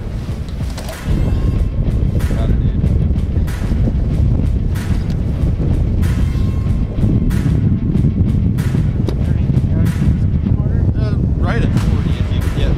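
Strong wind buffeting the microphone: a loud low rumble that sets in about a second in and carries on, with scattered clicks and knocks.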